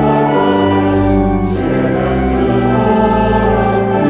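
A choir singing a slow hymn verse, with organ accompaniment holding long sustained chords that change every second or so.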